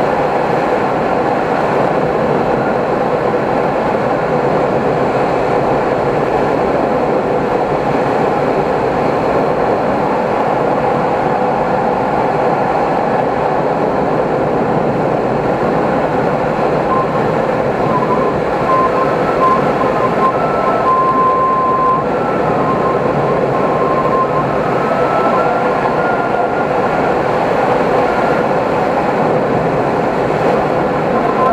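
Steady rush of airflow over the canopy of an SZD-50 Puchacz glider in flight, heard from inside the cockpit. A faint wavering whistle comes and goes over it in the second half.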